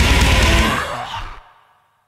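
The end of a slam death metal track: distorted guitars and drums play at full level, then stop about half a second in. A short ringing tail dies away to silence by about a second and a half.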